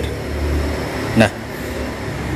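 Steady low background hum with a faint even hiss, broken about a second in by a short spoken "nah".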